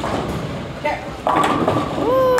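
A bowling ball rolling down the lane, then a sudden clatter of pins being hit about a second and a quarter in, with voices around it.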